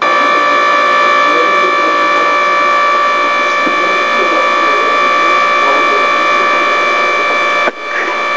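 A water purification unit's pump running with a steady whine of several fixed tones over a hiss, dipping briefly just before the end.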